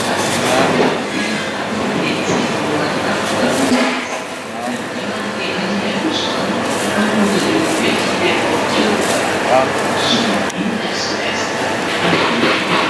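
Busy supermarket background din with indistinct voices, and a thin plastic produce bag crinkling as eggs are picked into it.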